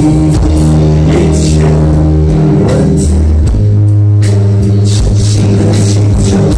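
Live rock band playing loudly: electric guitar and bass holding sustained chords over drums with repeated cymbal hits.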